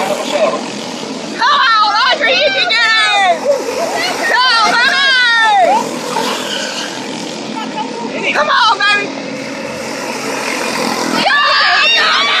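A pack of quarter midget race cars' small Honda engines running on the oval, rising and falling in pitch as the cars take the corners, with people shouting and talking in the stands.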